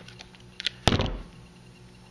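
Hand crimping pliers squeezed shut on a Deutsch pin's wire barrel: a couple of faint clicks, then one sharp snap about a second in as the crimp completes.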